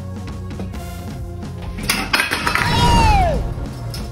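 A stainless steel vacuum flask dropped on a tiled floor: a sharp metallic clatter about two seconds in, ringing on for over a second and ending in a falling tone. Background music with a steady beat runs throughout.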